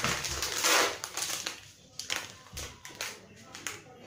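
Plastic coffee sachet being handled: a loud rustle in the first second or so, then lighter crinkles and taps as the packet is picked up.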